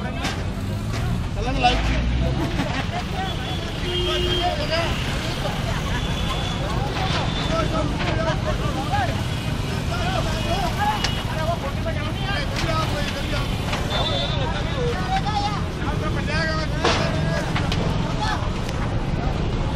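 Busy street ambience: a steady low rumble of road traffic with indistinct voices of people talking, and a few brief high tones now and then.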